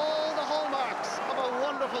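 A man's television commentary voice calling a score in a hurling match, over the steady background sound of the ground.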